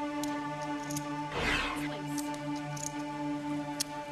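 Background music: a steady synth drone with a lower note pulsing on and off. A brief noisy swoosh sweeps through about a second and a half in, and a few faint high ticks sit on top.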